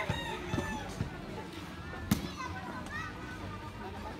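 Voices of players and onlookers calling out across an outdoor court, with one sharp slap about two seconds in: a hand striking a volleyball. A few lighter knocks come in the first second.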